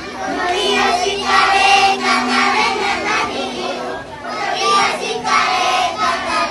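A group of young children singing a Christmas carol together in Zapotec, in short phrases with a brief break about four seconds in.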